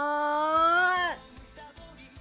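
Anime ending-theme song: a voice holds one long sung note, rising slightly, then slides down and breaks off about a second in, leaving quieter music.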